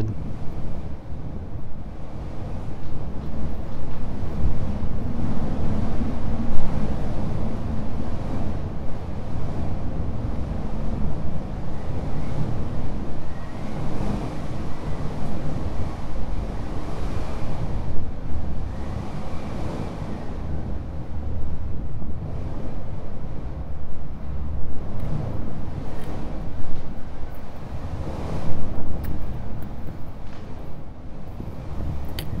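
Wind buffeting the microphone in gusts: a low rumble that swells and eases every few seconds.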